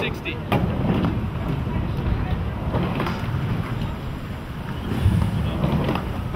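Wind buffeting the camera microphone, a steady low rumble, with a couple of faint clicks.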